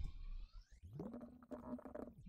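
Faint computer-keyboard typing, with a low hum-like tone that rises and then holds through the second half.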